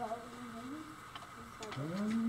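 A soft, wordless voice whose pitch slides up and down, with a few faint clicks.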